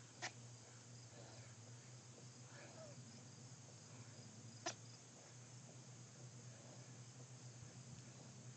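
Near silence: a faint steady low hum, broken by two short sharp clicks, one just after the start and one about four and a half seconds in.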